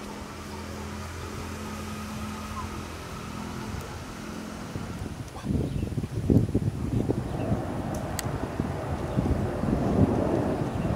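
A steady low engine-like drone, then from about five and a half seconds in, wind buffeting the microphone in uneven low gusts, the loudest sound, with a couple of faint clicks.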